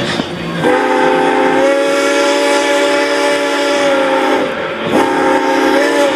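Steam whistle of narrow-gauge 2-8-2 steam locomotive D&RGW K-27 No. 464, sounding several notes at once: one long blast followed by a shorter one, over the rumble of the moving train.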